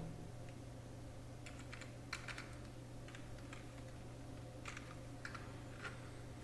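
Computer keyboard being typed on: a handful of faint, irregularly spaced keystrokes over a low steady hum.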